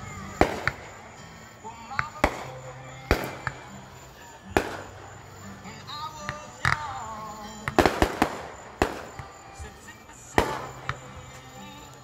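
Fireworks shells bursting overhead: a string of about a dozen sharp bangs at uneven intervals, a quick cluster of them just before the two-thirds mark, each trailing off in echo.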